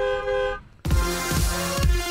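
Radio traffic-update jingle: a steady held chord for about half a second, a brief drop out, then electronic music with a thumping beat starting just under a second in.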